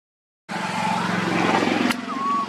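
Half a second of dead silence, then a motor vehicle's engine running close by, a steady low hum growing slightly louder. It is cut off by a sharp click near the end.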